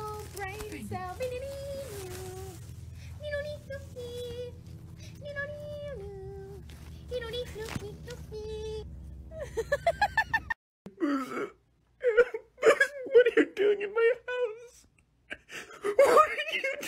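A high, wavering voice-like sound holding stepped notes over a steady low hum, cutting off about ten seconds in. It gives way to a puppy whimpering and whining in short, loud, wobbling bursts.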